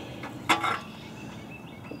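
A single short metallic knock with a brief ring about half a second in, from the tin toy piano being handled, with a fainter tick near the end.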